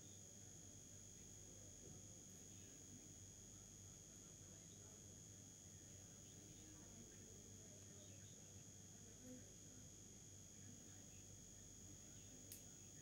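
Near silence: a faint, steady high-pitched whine over a low hum, with faint distant voices now and then.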